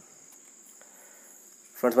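Faint, steady, high-pitched chirring of crickets, with a man's voice starting to speak near the end.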